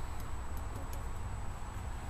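Volkswagen engine idling with a steady low rumble while running on only one side: the other side's exhaust stays cold, so its cylinders are not firing.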